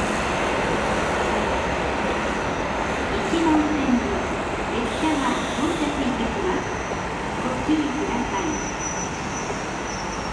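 Steady running noise of a JR 721 series electric train pulling away down the line, slowly fading, with low voices faintly heard over it a few times.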